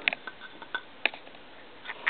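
A few faint, scattered ticks and clicks of fingers handling a telephone's thin stranded wires against its dial circuit board, twisting the strands together.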